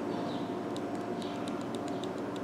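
Light clicks of a tablet's volume-down button pressed repeatedly, a run of small ticks, over a steady hum.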